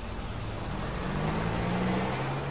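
A car driving up the street, its engine hum and road noise growing steadily louder as it approaches.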